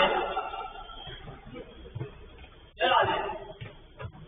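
Men's voices calling out during a five-a-side football game, one shout at the start and another about three seconds in, with a few low thuds between, picked up by a security camera's microphone.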